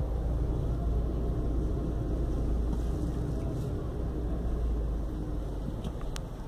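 A steady low rumble with an even haze of background noise and no distinct events, easing slightly near the end.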